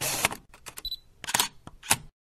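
Camera shutter sound effect: a short burst of hiss, then a string of about six sharp clicks, with a brief high beep among them near the middle.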